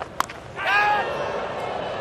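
A cricket bat strikes the ball once with a sharp crack about a quarter of a second in: a top edge off a short ball that carries for six. A shout and steady crowd noise follow.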